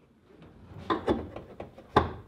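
Gas hood strut being snapped onto its ball-stud mounts on a Jeep Wrangler JK hood: a few short clicks and knocks of metal fittings being pushed home, with a sharper knock at the end.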